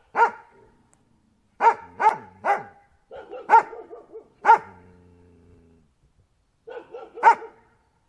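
A dog barking in short single barks: one at the start, three quick ones about two seconds in, and a few more around the middle. The last of these trails into a low drawn-out sound, and a short run of barks follows near the end.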